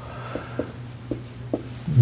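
Dry-erase marker writing on a whiteboard: a handful of short, faint marker strokes.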